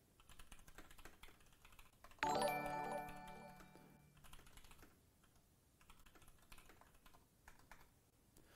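Faint computer keyboard typing, light clicks throughout. About two seconds in, a short musical notification chime sounds and fades over about two seconds: a livestream new-follower alert.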